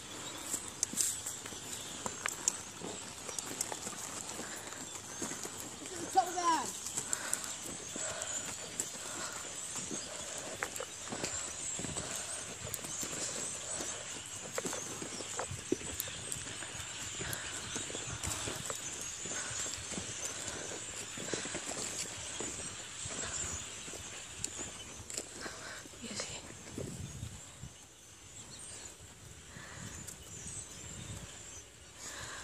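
A horse's hooves on a soft dirt arena as it is ridden, giving irregular soft hoofbeats.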